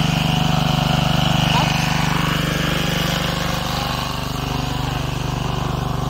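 A small engine running steadily, a low even hum that eases off slightly after about four seconds.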